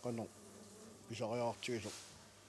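A man speaking Greenlandic in three short bursts, with brief pauses between them.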